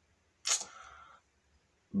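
A single short, sharp click about half a second in, trailing off into a faint breathy hiss.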